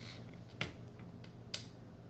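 A quiet pause with a faint steady low hum and two soft clicks about a second apart.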